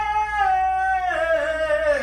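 A woman singing one long held note, steady at first and then sliding down in pitch through the second half.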